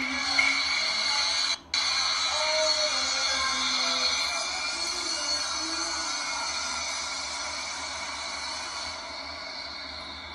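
Background music, steady and slowly getting quieter, with a brief drop-out about one and a half seconds in.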